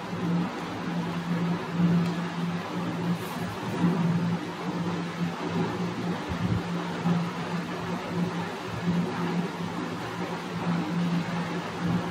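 A steady mechanical hum over a hiss, wavering slightly in level but never stopping.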